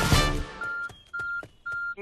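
A loud music chord fades out. Then come three short electronic beeps on one steady pitch, about half a second apart, each set off by a small click.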